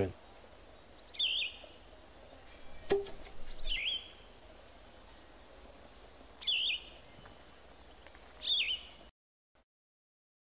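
A bird's short chirped call, the same each time, repeated four times about every two and a half seconds over faint outdoor ambience, with a single click about three seconds in. The sound cuts off near the end.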